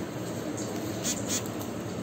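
Plastic bag of sesame burger buns being handled, with a few faint crinkles about a second in, over a steady background hiss.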